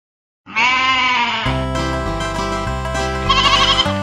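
A single wavering sheep bleat about half a second in, then an upbeat instrumental children's-song intro with bass and a steady beat starts about a second later. A second wavering call rises over the music near the end.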